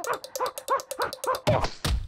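Cartoon sound effects: a rapid run of short, high, rising-and-falling squeaky cries from a small cartoon chick, about four a second, each with a sharp click, ending in two heavy thuds as a thread spool rolls over him.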